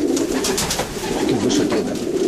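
Many racing pigeons cooing together in a loft: a continuous low, warbling chorus, with a few short clicks or rustles about half a second in and again later.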